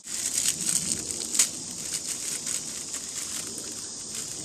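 Foil Pop-Tarts wrapper being torn open and crinkled by hand: irregular crackling, busiest in the first second and a half with one sharp rip, then softer crinkling.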